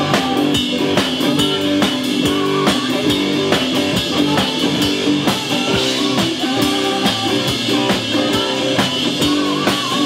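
Live rock band playing, with drum kit and electric guitar, to a steady beat.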